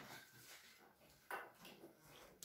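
Near silence with faint handling sounds and one brief click a little past halfway, as objects are taken out of a wicker basket.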